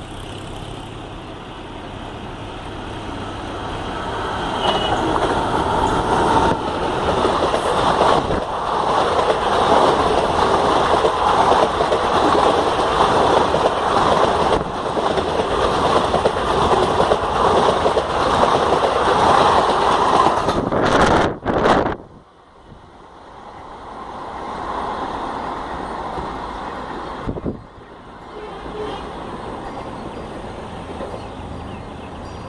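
Electric-locomotive-hauled express train passing close by at speed: the rumble and clatter of locomotive and coaches swell over the first few seconds and stay loud for a long stretch. The sound cuts off suddenly about 22 seconds in, leaving a much quieter steady background.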